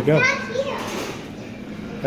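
A child's voice speaking briefly, then low background room noise.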